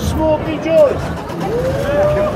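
Voices of people in a busy street crowd, two short bursts of talk over a constant low rumble.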